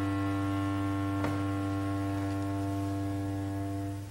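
Bass clarinet holding one long, low, steady note that stops near the end, with a single light tap about a second in.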